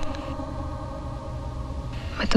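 A low, steady rumble in the film's soundtrack, with a faint hiss above it. A fading tail of the preceding sound dies away in the first moment.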